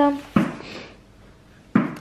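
A page of a paper exercise book being turned by hand: a sharp paper snap followed by a brief rustle.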